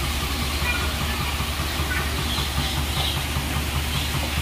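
Steady rushing wind noise buffeting an outdoor microphone, with a low, unsteady rumble. A few faint, short, high chirps come through now and then.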